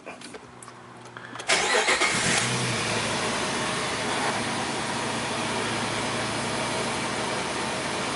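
Jeep TJ engine heard from inside the cab, starting up about a second and a half in with a brief flare of revs, then settling into a steady idle.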